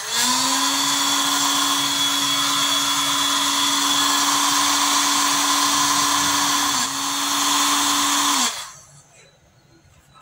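Hot-air rework station's blower running: a steady motor hum with a rush of air that rises briefly in pitch as it starts, dips for an instant near seven seconds, and cuts off about eight and a half seconds in. The hot air is reflowing the solder to seat the reprogrammed IC back on the circuit board.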